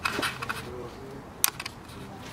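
A single sharp click about a second and a half in, from the switch of a Neewer CN-160 LED video light being worked, over faint handling rustle.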